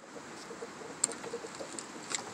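A hen clucking softly, a faint low murmur, with a single light tick about a second in.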